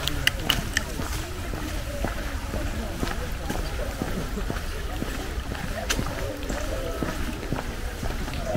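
Outdoor walking ambience: people talking at a distance over a steady low rumble, with a few sharp clicks in the first second and another about six seconds in.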